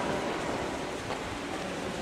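Steady rushing ambient noise in a long concrete stairway tunnel, with a few faint knocks.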